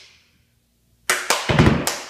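Drum-kit music: the tail of sharp drum hits dies away into a brief silence, then a new run of hard, punchy drum hits starts about a second in.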